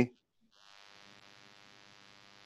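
The tail of a man's word, then a faint steady electrical hum with many evenly spaced overtones and a light hiss.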